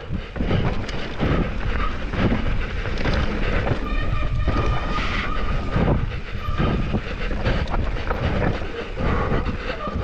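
Mountain bike running fast down a rocky dirt trail: rumbling tyre noise and the bike rattling and knocking over rocks and roots. A high steady tone sounds for about two seconds near the middle.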